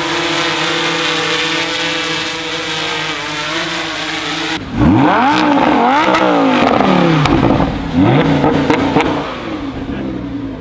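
A camera quadcopter drone hovering close by, its rotors giving a steady whine. About four and a half seconds in, this gives way to a Lamborghini Huracán's V10 being revved in a series of sharp blips, the pitch rising and falling about once a second.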